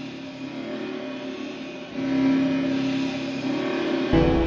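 Intro of an electronic track: held synthesizer notes with no beat, swelling louder about halfway through.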